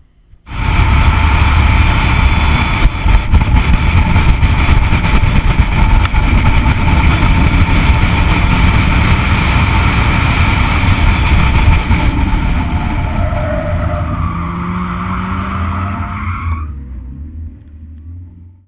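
Opel Speedster 2.2's naturally aspirated four-cylinder engine driven hard around a race track, heard through heavy wind and road noise on an outside-mounted action camera. It comes in suddenly about half a second in, and the engine note shifts near the end as the sound fades out.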